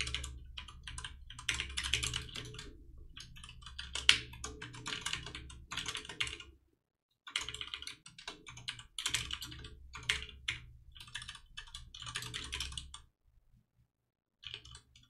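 Computer keyboard typing: fast runs of keystrokes, pausing briefly about seven seconds in and stopping about a second before the end.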